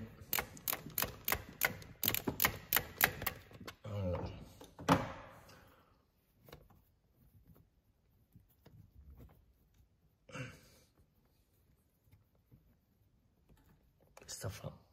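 Ratchet wrench clicking rapidly, about four clicks a second, as it backs out the last of the Torx screws holding a throttle body. After a few seconds the ratcheting stops, leaving scattered faint clicks and knocks of the tool and parts being handled.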